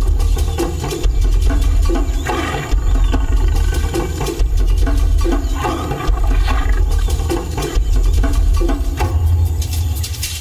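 Lioness growling over a fresh kill as she feeds, a continuous deep rumble with rasping pulses about once a second.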